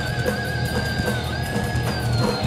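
Live heavy metal band playing loud, with a single high electric guitar note held over the distorted rhythm and drums, wavering in pitch; it steps up slightly about halfway through and starts to slide down at the end.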